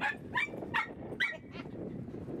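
A small dog giving four short, high-pitched warning barks in quick succession, about two or three a second, telling a husky to back off.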